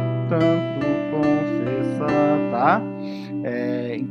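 Electronic keyboard playing a melody in A minor in sixths, two notes struck together, as a series of held notes that change every half second or so.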